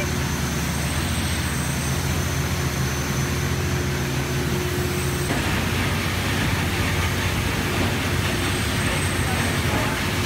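Riverboat engine-room machinery running with a steady, loud drone. About halfway through the low hum drops and more hiss comes in.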